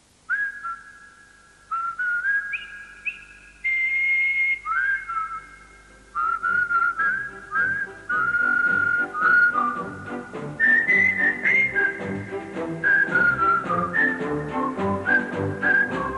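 A person whistling a tune with sliding notes. Backing music with a beat comes in about six seconds in and plays under the whistling.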